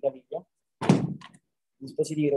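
A single dull thump about a second in, dying away within half a second, between bits of a man's speech.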